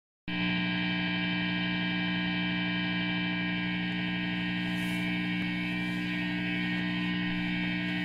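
Steady electrical mains hum with a buzzy stack of overtones from an electric guitar amplifier rig left on and idle. It starts suddenly just after the beginning and holds at an even level.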